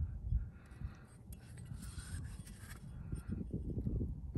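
Wind buffeting the microphone: an uneven low rumble that rises and falls, with a faint rustle around the middle.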